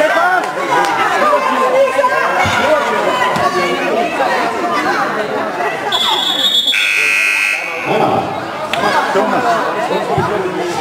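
Basketball game buzzer sounding for about a second, preceded by a short, higher steady tone, about six seconds in. Voices and shouts in a large hall run underneath.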